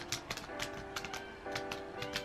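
Computer keyboard keys clicking in an irregular run as text is typed, over background music with sustained chords.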